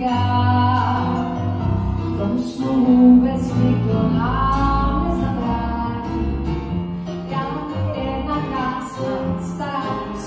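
A woman singing live into a handheld microphone with keyboard accompaniment, amplified through a hall's sound system.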